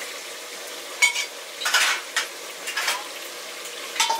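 A wooden spatula stirring and scraping inside a metal cooking pot over a wood fire, about four short scrapes in the middle, over a steady sizzling hiss. A metal clank of a pot comes right at the end.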